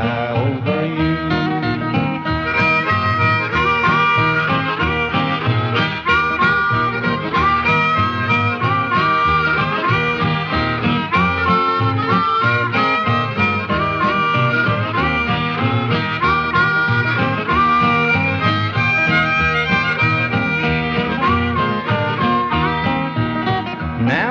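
Harmonica solo in the instrumental break of a 1949 country boogie record, its notes bending in short slides over a steady guitar rhythm.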